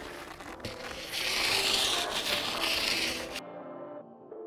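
Skis scraping as they slide. The hiss is loudest from about a second in and cuts off abruptly, leaving soft ambient music.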